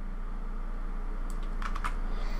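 A quick run of about five short clicks at the computer in the second half, over a steady low hum.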